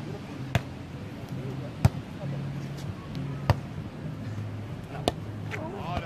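Four sharp hand hits on a volleyball, about a second and a half apart, the second one the loudest, over a low background hum.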